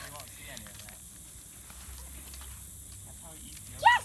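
Quiet outdoor background on a lawn: a steady high hiss with faint children's voices, and a voice starting up near the end.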